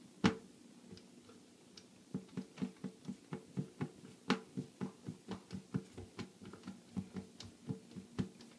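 Hand screwdriver working a screw into a plastic grommet on a sump basin lid: a single sharp click near the start, then from about two seconds in an even run of short clicks, about four a second.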